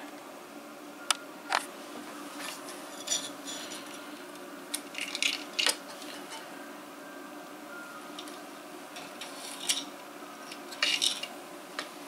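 Scattered light clicks and taps of hands handling the Anet A8 3D printer's X carriage and frame while threading its timing belt, with little bunches of clicks around the middle and near the end, over a faint steady hum.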